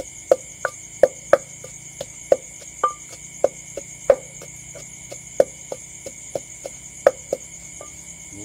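Wooden pestle pounding chilies and garlic in a clay mortar, a quick uneven run of dull knocks about two or three a second. Crickets trill steadily underneath.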